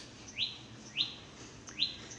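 A small bird chirping repeatedly: about four short rising chirps, roughly every half second.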